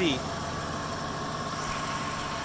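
Ford 351 Windsor 5.8-litre V8 idling steadily, heard from over the open engine bay.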